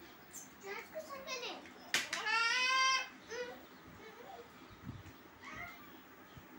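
A small child's voice: a few short babbled sounds, then one long high-pitched call about two seconds in, with a sharp click just before it.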